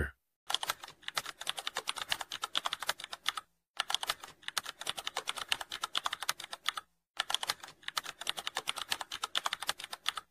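Keyboard-typing sound effect: rapid runs of key clicks, broken by brief pauses about three and a half and seven seconds in.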